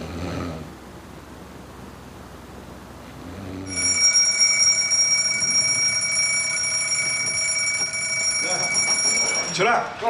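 Alarm clock bell ringing loudly and steadily as a wake-up alarm. It starts a few seconds in, lasts about six seconds, and cuts off suddenly just before the end.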